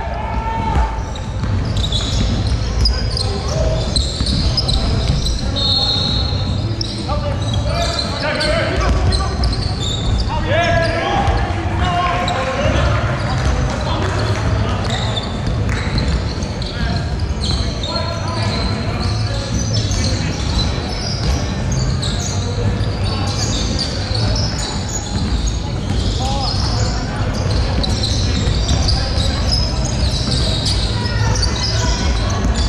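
A basketball game on a hardwood court in a large sports hall: a ball bouncing, players running, and players' voices calling out indistinctly, with a few brief high squeaks.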